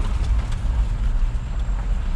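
Low, steady rumble of a pickup truck's engine and road noise heard from inside the cab as it rolls along slowly.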